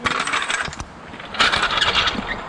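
Metal parts clinking and rattling in two rapid bursts of clicks, the second starting about a second and a half in.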